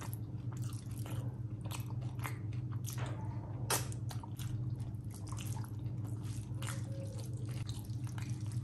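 Close-up eating: wet chewing and lip-smacking, with irregular squishing as a hand mixes rice and curry on a steel plate. A sharper click comes about three and a half seconds in, and a steady low hum runs underneath.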